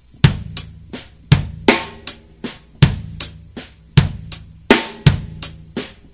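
Drum kit played slowly in a linear funk groove: single strokes one at a time, never two together, moving among bass drum, hi-hat, snare ghost notes and accented snare at about three strokes a second. The playing stops just before the end.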